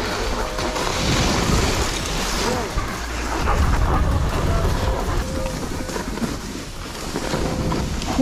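Wind buffeting the action camera's microphone over the steady hiss of a ski bike's skis sliding and carving through snow on a fast descent.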